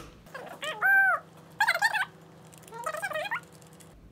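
Three short, high-pitched, voice-like calls about a second apart, each rising then falling in pitch.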